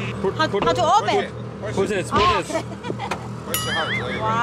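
Voices talking over a steady, low, evenly pulsing hum from a classic car, which its owner explains as the vents, the fan pulling air.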